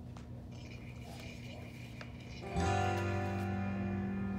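A recorded instrumental backing track begins about two and a half seconds in, opening with a held chord that sounds steadily. Before it starts there is only quiet room sound.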